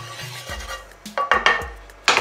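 Cookware and utensils knocking and clinking as a pan and oil are handled on the stove, with a few sharp knocks about a second in.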